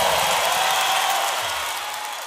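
Large concert crowd cheering and applauding, a dense noise that gradually fades.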